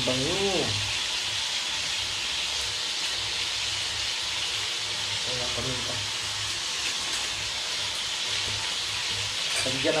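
Chopped pork sizzling steadily in hot oil in a wok.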